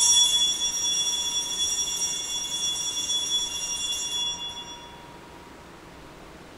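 Altar bell rung at the elevation of the consecrated chalice, one bright multi-toned ring that starts suddenly and fades out over about five seconds.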